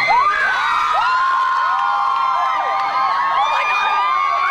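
A crowd of fans screaming in many overlapping high-pitched voices, a steady loud din of shrieks and cries.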